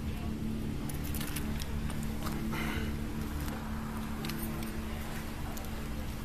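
Steady low hum of idling vehicles, picked up by a police officer's body-worn camera, with scattered light clicks and jingling from his gear as he moves.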